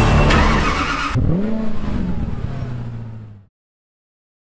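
Koenigsegg CCXR Edition's supercharged V8 revved once, its pitch rising and falling, then idling with a low steady note. It cuts off suddenly about half a second before the end.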